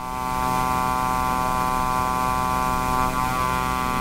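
A small unmanned aircraft's engine and propeller droning steadily at one pitch, holding constant power, cut off suddenly near the end.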